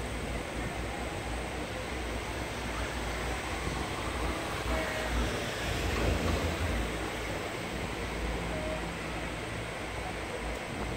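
Steady rushing noise with a low rumble while riding in a moving open car of a Doppelmayr cabriolet lift. The rumble swells about six seconds in.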